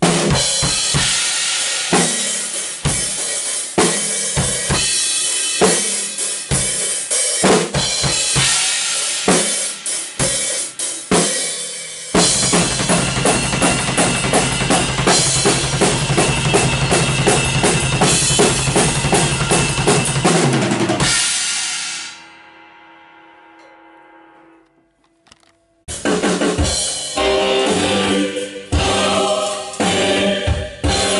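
Rock drum kit played hard in a studio, with kick, snare and crashing cymbals. About twelve seconds in it goes into a long run of very fast, even strokes that dies away about nine seconds later. Near the end, full music with a steady beat comes in.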